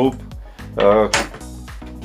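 A man's voice speaking Slovak in short phrases over a steady low background of music; no power tool runs.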